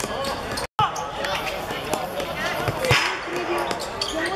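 Football being kicked and bouncing on an outdoor hard court, sharp thuds scattered among players' shouts and onlookers' chatter. A brief gap of silence about three-quarters of a second in, where the footage is cut.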